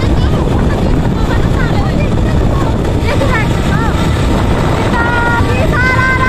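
Wind buffeting the microphone over the rumble of a moving vehicle, with young women's voices shouting and laughing over it, louder held calls near the end.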